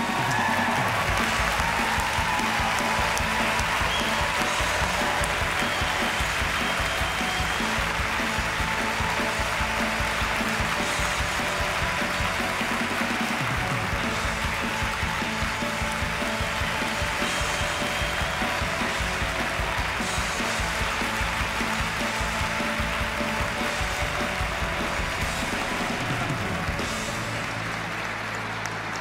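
A large audience applauding steadily, with music playing over the applause.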